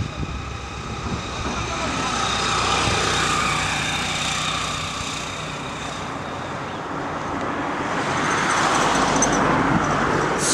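Road traffic passing on a paved highway, vehicle engines and tyres swelling as one goes by about three seconds in and another builds near the end.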